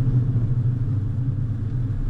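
Car cabin noise while driving: a steady low drone of engine and road noise heard from inside the car.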